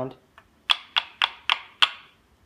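Purpleheart wood kendama ball knocked against the wooden ken five times in quick succession: sharp wooden clicks about a third of a second apart, a nice sound.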